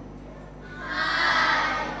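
A class of children saying "Hi" together in a long, drawn-out chorus, starting about half a second in.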